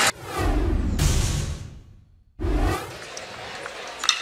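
Broadcast transition whoosh sound effect with a rippling, flanged sweep that fades out to a brief silence about two seconds in. A second, shorter whoosh follows, then low ballpark background noise.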